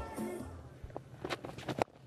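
Cricket bat striking the ball: a few sharp clicks, with the loudest crack near the end as the ball is hit for a boundary.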